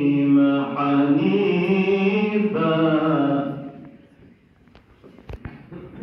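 Male voices chanting a melodic religious chant (dova) in long held notes, ending a little past halfway; then a quieter stretch with a few small knocks and rustles.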